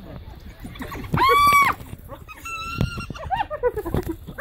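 African wild dogs and spotted hyenas calling in a scuffle: a loud high-pitched squeal about a second in, a second, shorter squeal just before three seconds, and rapid chattering calls near the end.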